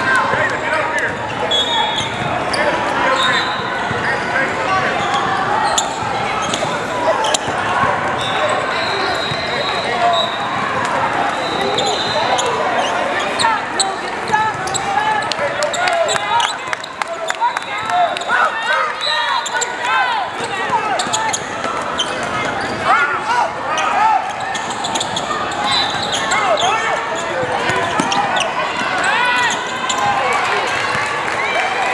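Basketball game in a large, echoing hall: many overlapping voices of players and spectators calling and chattering, with frequent thuds of a basketball bouncing on the hardwood floor.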